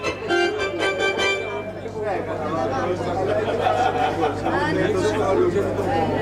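A few sustained notes from an instrument on stage over the first two seconds, then the audience chattering, all over a steady low hum.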